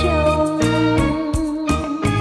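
Vietnamese bolero duet song with band accompaniment: a woman's voice holds one long note with vibrato until near the end, over a steady beat of bass and percussion.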